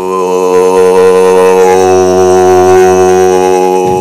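A single low droning note with many overtones, held at one steady pitch for about four seconds and stopping abruptly at the end.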